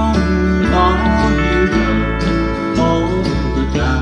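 Country ballad instrumental break: a lead guitar plays sustained notes that slide and bend in pitch over a moving bass line.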